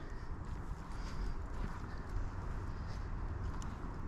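Soft, irregular rustling and scraping of loose dirt and dry leaves as a person squeezes into a narrow hole in the ground.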